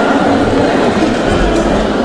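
Dense crowd chatter, many voices overlapping in a large, busy exhibition hall, with low rumbling bumps underneath.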